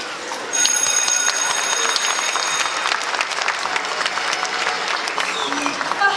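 Audience applauding, starting about half a second in and running steadily for several seconds, with a few high steady tones sounding over the first couple of seconds.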